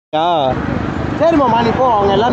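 Men talking loudly in conversation, cutting in abruptly a moment in, over the low running of motorcycle engines.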